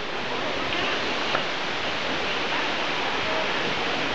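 Steady, even rushing background noise inside the huge rainforest greenhouse dome, with a faint distant voice about a second and a half in.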